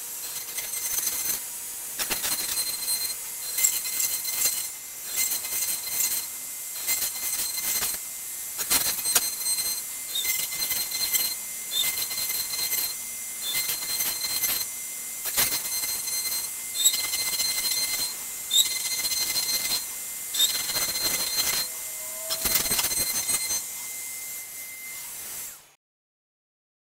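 Makita trim router on a CNC machine running a downcut bit through a cedar fence picket: a steady high motor whine with cutting noise that rises and falls every second or two as the bit moves through the wood. It fades out near the end.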